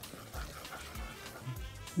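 Faint background music with a steady beat, over the soft stirring of flour and hot ghee in a pot.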